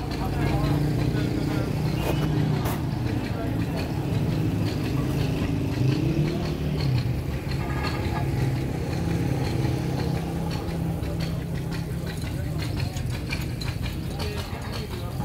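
A vehicle engine running steadily with a low rumble, with indistinct voices in the background.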